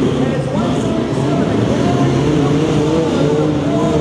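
Several pro-modified off-road race trucks' engines running and revving together, their pitch rising and falling as they accelerate and back off.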